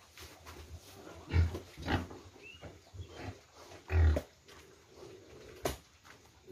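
Pigs grunting: a few short, low grunts, two of them louder, with a sharp knock near the end.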